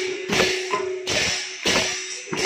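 Several mrudanga, the barrel drums of Odissi sankirtan, played together by hand in a quick rhythm of about two to three strokes a second, each stroke ringing with a pitched drumhead tone.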